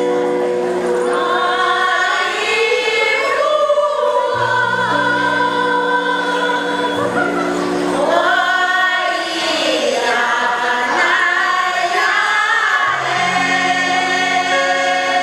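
A village choir singing a traditional Paiwan ancient song in parts. Long, steady low notes are held beneath higher voices that glide up and down.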